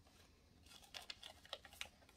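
Faint crinkling and crackling of paper being folded and creased by hand, a quick run of small sharp crinkles starting about half a second in.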